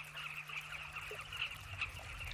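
A colony of carmine bee-eaters calling, many short calls overlapping into a continuous chatter.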